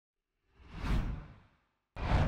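Whoosh sound effects for an animated title. One swoosh swells and fades over about a second, and a second one cuts in sharply right at the end.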